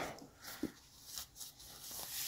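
A quiet pause holding only room tone and a few faint, brief handling sounds, the clearest about half a second in, from a hand touching the chair's seat cushion and its fabric underside.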